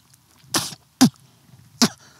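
A man coughing in three short bursts, reacting to a bug.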